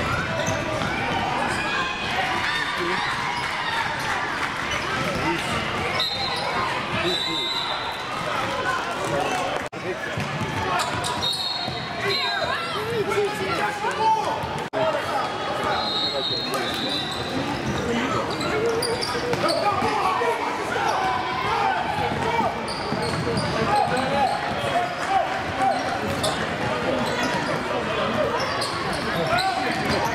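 Youth basketball game in a gym: a ball dribbling on the hardwood under steady background chatter and calls from players and spectators. A referee's whistle blows briefly a few times.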